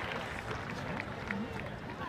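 Large audience's applause dying away into scattered claps and a murmur of crowd voices.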